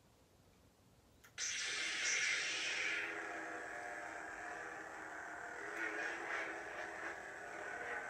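Hasbro Black Series Force FX Darth Maul double-bladed lightsaber staff igniting through its built-in speaker. After a quiet second there is a click, then a sudden loud ignition sound for both blades. It settles into the saber's steady electronic hum.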